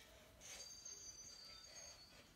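Near silence: quiet room tone with a faint high-pitched whine.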